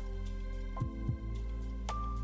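Background music: held, steady notes over a deep bass, with two low thumps about a second in.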